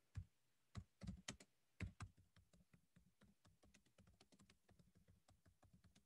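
Faint computer keyboard typing: a quick run of key clicks, a few louder ones in the first two seconds.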